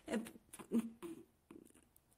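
A woman's voice in a few brief, soft fragments between phrases of speech, with near-silent gaps between them.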